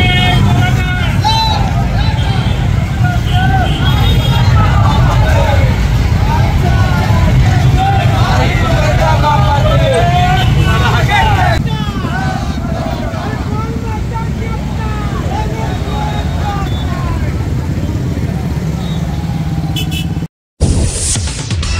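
Many motorcycle engines running together in a slow-moving rally, under the voices of a large crowd calling and talking over one another. The sound becomes somewhat quieter about halfway through.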